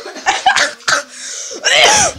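A person laughing hard in short bursts, breaking into a loud, harsh cough near the end: a laughing fit.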